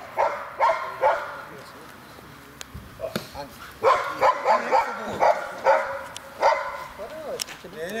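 German shepherd barking in short, quick bursts: a few at the start, then a run of about eight in a row from about four seconds in. The dog is worked up during protection training.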